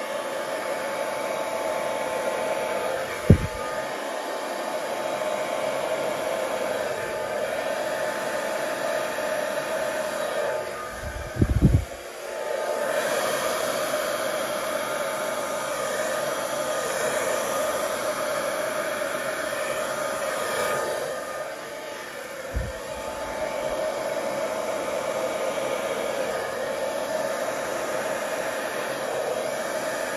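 Handheld hairdryer blowing steadily, used to push wet poured acrylic paint outward across a canvas in a Dutch pour; its level dips briefly a little past twenty seconds as it is moved. A few brief low thumps come about three, eleven and twenty-two seconds in.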